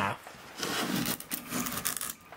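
Veritas combination plane taking a pass along a board's edge in a rabbet, the blade slicing off a thick shaving. The stroke starts about half a second in, lasts about a second and a half, and stops near the end as the shaving curl comes free.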